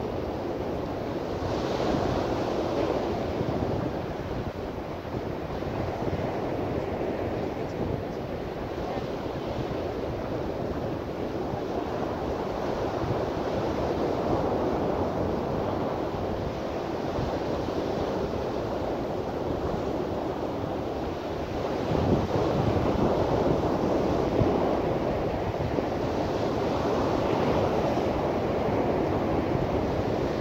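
Wind buffeting the microphone: a steady rushing that swells and eases in gusts and grows louder about three quarters of the way through.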